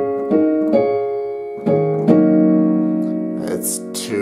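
Digital piano playing gospel chords in D-flat: three chords in quick succession, then two more about a second later, the last one held and fading.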